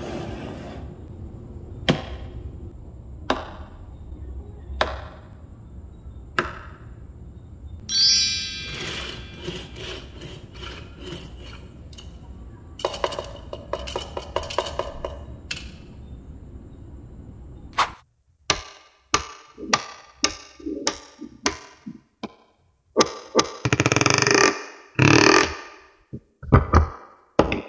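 Tiny magnetic balls clicking and snapping against each other. A few sparse clicks over a low hum at first, with a brief chirping sweep about a third of the way in; then, about two-thirds through, a quick run of sharp, louder clicks and short rattles as strips of balls are laid down.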